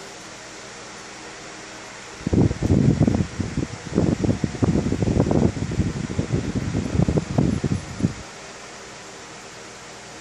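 Irregular gusts of air buffeting the microphone, a loud low blustery noise lasting about six seconds that starts about two seconds in, over a faint steady hum in the room.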